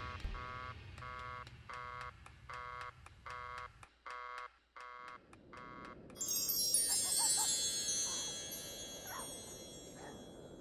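Musical ending: the last low orchestral chord dies away, followed by a run of short chiming tones about twice a second. About six seconds in comes a bright, glittering high chime shimmer that slowly fades out.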